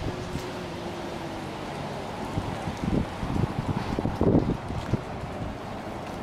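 Wind buffeting a handheld camera's microphone outdoors, a steady rumble with a faint steady hum in the first two seconds. A few dull low thuds come through the middle, the loudest a little after four seconds in.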